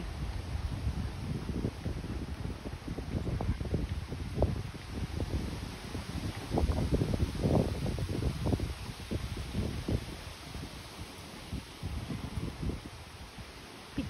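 Gusty wind buffeting the microphone, with rustling leaves; the rumble swells and drops in uneven surges.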